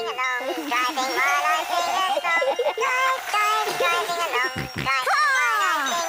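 A cartoon toy car's electronic jingle playing a bouncy melody as the car drives along. Near the end its notes begin to slide downward in pitch as the toy's batteries run down.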